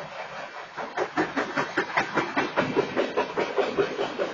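BNSF diesel locomotives rolling past, their wheels clacking over the rail joints in an even rhythm of about five knocks a second that starts about a second in.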